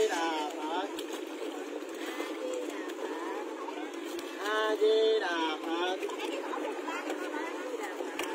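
People's voices over steady background chatter, with one clear phrase about halfway through that ends on a drawn-out held note.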